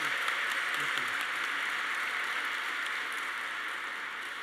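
Audience applauding steadily, slowly dying down, with a man's voice briefly over it in the first second.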